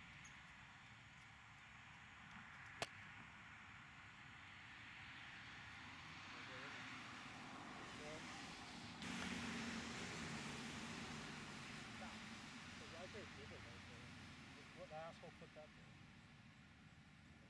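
A single sharp click of a golf iron striking the ball off a hitting mat, about three seconds in, over a quiet outdoor background. From about nine seconds a louder steady rushing noise comes in, and faint voices are heard near the end.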